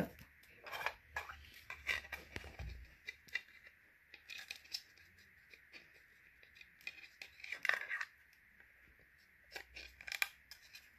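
McFarlane Spawn plastic action figure being handled: scattered light clicks and rustles of its stiff plastic cape and parts turning in the hands, busier and louder about three-quarters of the way through.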